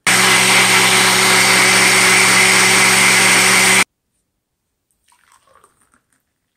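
Single-serve countertop blender running at full speed, a steady motor hum under the whir of blending carrot, spinach, garlic and water into juice. The motor cuts off suddenly just before four seconds in.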